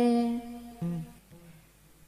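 A young male singer holds a long, steady sung note that fades about half a second in. A short, lower note follows near one second, then a near-silent pause between phrases.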